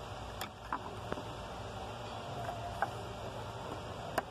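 A few faint, small clicks from a thin flat screwdriver prying up the red locking tab on an airbag wiring connector, over a steady low background hum.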